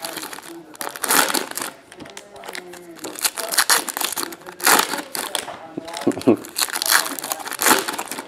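Trading-card pack wrappers crinkling and tearing as they are opened by hand, in irregular bursts of crackle.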